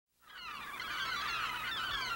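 A flock of gulls calling, many cries overlapping, fading in just after the start.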